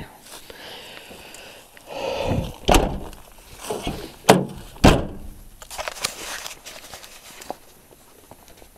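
Car door of an 1985 Oldsmobile Cutlass being handled and shut: several thunks, the two loudest about half a second apart near the middle, followed by scuffing footsteps.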